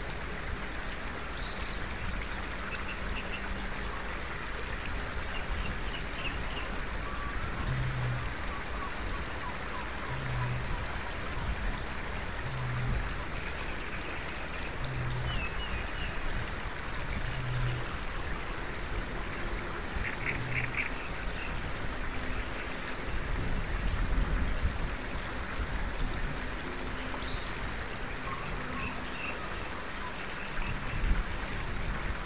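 Forest ambience: a steady wash of noise with scattered high chirps from birds. Through the middle a low short call repeats about every two and a half seconds, and about twenty seconds in comes a quick run of animal calls.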